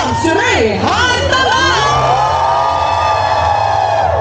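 A raised voice calling out over a large outdoor crowd, its pitch sweeping up and down, then holding one long drawn-out call for about two seconds near the end, with crowd noise underneath.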